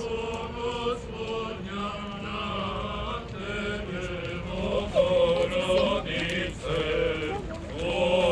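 Serbian Orthodox church chant sung by a group of voices: a slow melody of long held notes in phrases, growing louder about five seconds in.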